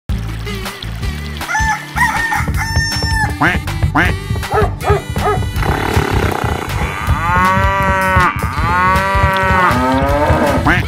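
Cartoon farm-animal sound effects, mainly chicken and rooster calls, over a children's music track with a steady bass beat. Short calls come in the first half, and two long, arching calls near the end.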